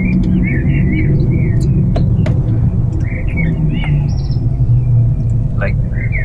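Steady low rumble, with small birds chirping in short bursts over it, most in the first second and again around three to four seconds in.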